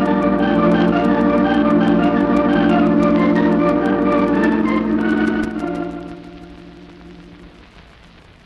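Organ bridge music marking a scene change and the passing of time in an old radio drama: sustained chords swell in, hold, and fade away a little over five seconds in. Light crackle of an old recording runs underneath.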